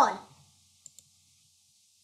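Two faint computer mouse clicks close together, about a second in, as the browser is switched to another tab.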